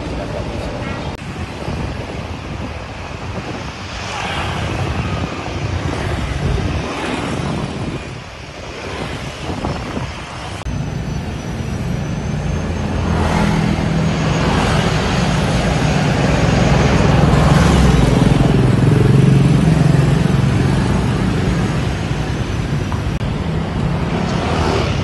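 Street traffic: cars and motorbikes driving past on an urban road, with a low engine rumble that grows louder through the second half as a vehicle passes close by.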